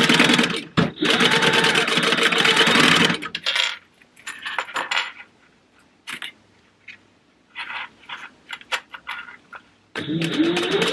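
Sewing machine stitching through a red zipper tab and nylon zipper tape, running in two short spells with a brief stop about a second in, then stopping after about three seconds. Light clicks and handling sounds follow as the pieces are shifted under the presser foot.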